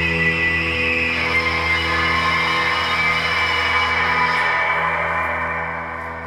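Amplified electric guitar sustaining a drone of layered, steady tones as the song's ending, fading away over the last second.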